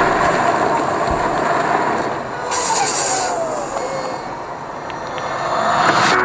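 A Honda sports car's engine running, its pitch gliding down about halfway through, as if easing off after a rev.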